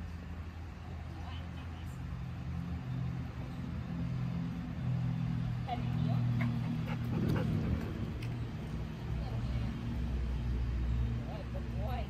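Dogs giving a few brief whines, about six, seven and eleven seconds in, over a steady low mechanical hum.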